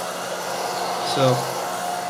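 Lift fan of a small homemade electric model hovercraft running steadily with a whir, holding the craft up on its air cushion while powered by an underpowered battery pack.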